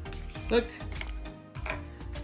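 Light clicks and rustles of a small cardboard box and tiny plastic toy pieces being handled on a wooden table, over soft background music.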